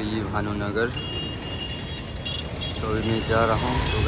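Outdoor city background: a steady low rumble of road traffic, with a voice heard briefly twice.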